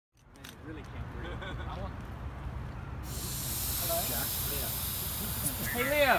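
A steady hiss of air that starts suddenly about halfway through, over a low rumble and faint, muffled voices.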